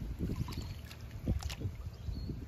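Hands scooping and pushing mud and muddy water in a shallow irrigation channel, with irregular sloshing and splashing.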